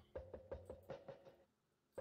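Faint background music: soft, evenly spaced knocking percussion over a faint held tone, about six strokes in the first second, then a pause.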